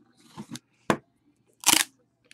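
Hands opening a wooden trading-card box: a sharp click about a second in, then a louder short scrape as the hinged lid comes open near the end.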